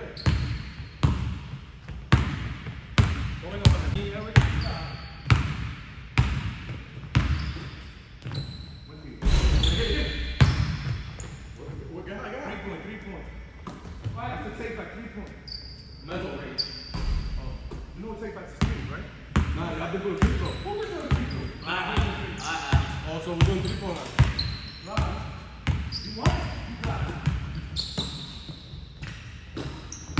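Basketball dribbled on a hardwood gym floor, in runs of sharp bounces about two a second, echoing in the large hall, with short high sneaker squeaks on the court.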